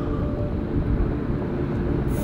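Steady low outdoor rumble with a faint steady hum running under it.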